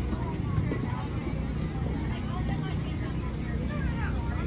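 Indistinct voices of people talking at some distance over a steady low rumble.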